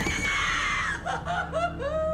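A man's high-pitched shriek of shock that starts suddenly and slowly falls, then breaks into a wavering, drawn-out "ooh".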